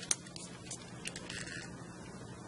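Faint small clicks and rattles of a plastic LEGO EV3 robot being handled and turned over in the hands, the sharpest click right at the start.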